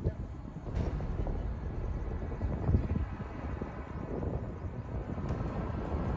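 Wind buffeting the microphone: a low, uneven rumble that swells and eases, with a couple of faint clicks.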